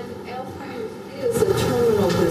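Distant, reverberant speech from off the microphone, faint at first and louder from about a second in.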